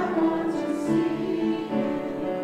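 Church choir singing a praise hymn in held notes, accompanied by piano.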